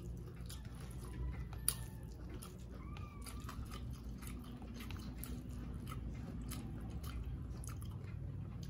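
Close-up eating sounds: bare fingers pressing and gathering steamed rice on a plate, with many small sticky clicks and one sharp click about one and a half seconds in.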